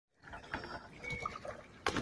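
Faint scattered knocks and clinks with a few brief high chirps, then a sudden louder sound just before the end.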